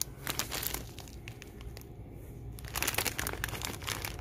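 Crinkling of a plastic snack-mix bag as it is handled and turned over, in uneven flurries that are thickest shortly after the start and again about three seconds in.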